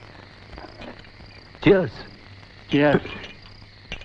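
Steady chirring of crickets, with two short voice utterances a little over a second apart.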